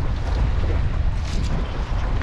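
Wind buffeting the microphone: a steady, gusting low rumble.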